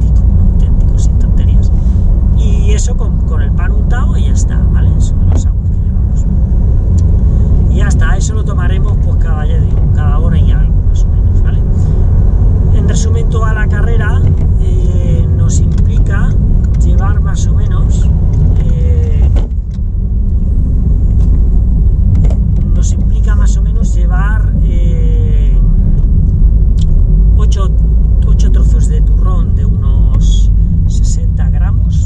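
Car driving on the road, heard from inside the cabin: a steady low rumble of engine and tyre noise, dipping briefly a little past the middle.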